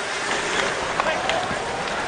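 Ice hockey arena ambience: a steady crowd hubbub mixed with skates on the ice, with a couple of faint stick or puck knocks near the middle.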